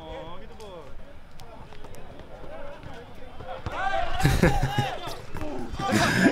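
Men's voices talking and calling out on an outdoor basketball court, louder about two-thirds of the way in, with a few short sharp ball bounces in between.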